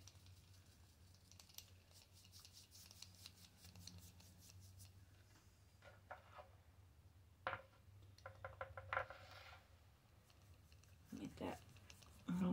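Near silence: low room hum, with a few faint scratchy strokes and taps of a paintbrush working paint onto the concrete statue, a short run of them about seven to nine seconds in.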